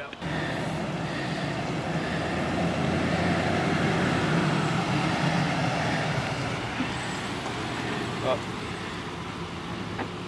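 Chevrolet pickup truck driving slowly along a street, a steady engine and tyre noise that swells gently and then eases off.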